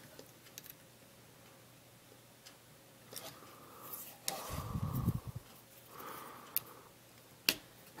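Plastic Lego bricks clicking and knocking as hands fit a piece onto a built AT-ST model, a few sharp separate clicks with a duller burst of handling about halfway through.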